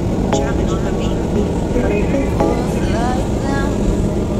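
Steady low rumble of an MRT train running, heard from inside the car, with short bits of voices talking over it.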